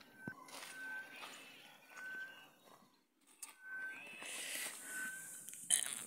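Soft footsteps and rustling on dry soil and leaves while walking through a garden, with a short high note repeating about once a second in the background.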